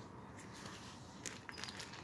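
Faint crackling of a small twig fire burning in a tinfoil pan, freshly fed with its last sticks. A few sharp crackles come in the second half.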